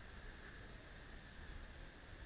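Faint low rumble of a Harley-Davidson Iron 1200's air-cooled V-twin engine at low revs as the motorcycle rolls slowly, under a steady faint hiss.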